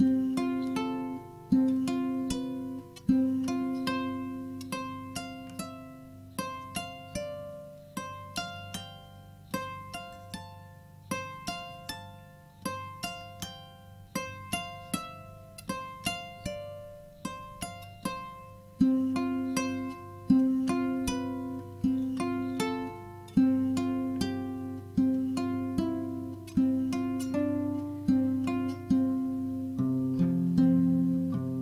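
Kora, the West African harp-lute, plucked by hand in a steady run of three-note figures, each a low C and F followed by a third note that steps through the scale, two to three plucks a second. Each note rings and decays under the next.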